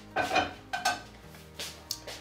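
Metal cookware being handled on a worktop: a frying pan and a stainless steel saucepan give a few short clinks and knocks, some with a brief metallic ring.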